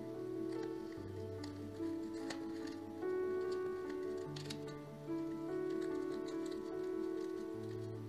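Slow background music with long held notes and a bass line changing every second or two. Under it, a few faint crinkles and taps of paper as a sheet of gold leaf on its backing paper is pressed onto the canvas and peeled back.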